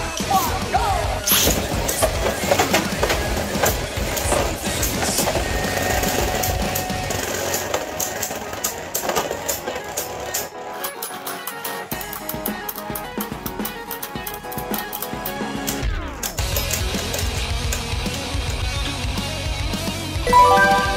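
Two Beyblade Burst tops spinning and clashing in a plastic stadium: a rapid run of clicks and knocks, densest in the middle, over background music.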